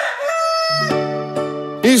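A drawn-out animal call, steady in pitch, used as a sound effect. A music jingle comes in under it before a second, with a low bass note beneath held chords.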